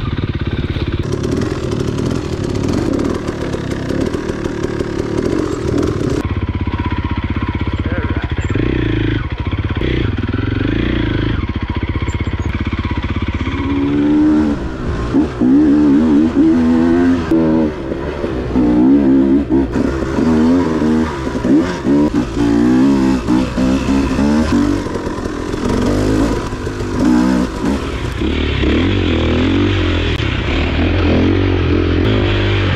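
Dirt bike engine heard close up from a camera mounted on the bike while riding trails. The throttle keeps changing, and through the second half the pitch rises and falls rapidly as the engine is revved and eased off.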